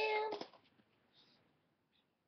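A child's high, drawn-out voice holding one pitch, which stops about half a second in; the rest is near silence.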